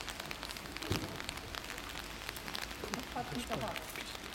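Indistinct voices talking over a steady crackling hiss, with no music playing.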